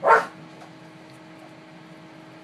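A dog gives a single short bark during rough play between dogs.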